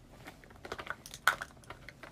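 Light, irregular tapping and clicking of fingertips on a smartphone screen, with one louder click a little past the middle.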